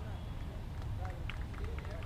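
Steady low hum of a large hall with faint background chatter of voices, and a few short sharp clicks scattered from about a second in.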